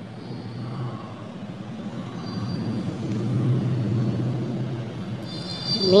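A low, steady mechanical rumble, like a vehicle engine, that swells to its loudest around the middle and eases off near the end.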